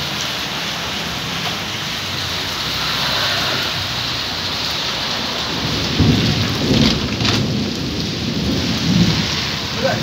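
Steady rain falling, with rolling thunder rumbling in low, uneven swells from about six seconds in.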